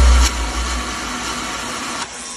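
Loud live-show sound in an arena, captured on a phone: bass-heavy stage music cuts away shortly after the start, leaving a steady, noisy din from the hall.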